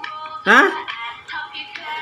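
Children's video music with singing playing from a phone's speaker, with a short voice call about half a second in.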